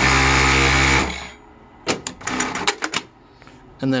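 JUKI DDL-9000C F-type industrial lockstitch sewing machine running at full speed through a programmed 70-stitch seam, a steady whir lasting about a second that stops abruptly. About a second later come a few sharp clicks.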